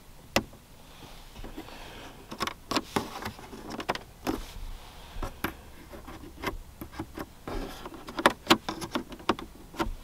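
A finger pressing and tapping the plastic buttons and light lens of a 2022 Lexus ES 350's overhead console, making an irregular run of sharp clicks, closer together in the second half. The tester judged this console could have been more solid than the rest of the almost squeak-free interior.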